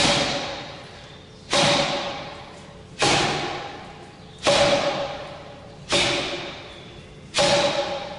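Forearm strikes on a "Kamerton" (tuning-fork) makiwara, a wall-mounted striking board, about one every second and a half: six hits, each a sharp thud followed by a ringing tone that dies away before the next.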